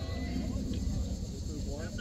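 Faint, indistinct voices from players and spectators over a steady low rumble of open-air background noise.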